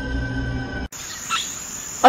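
Held background music tones that cut off abruptly about a second in, followed by a steady outdoor ambience of crickets chirping, with a few short chirps.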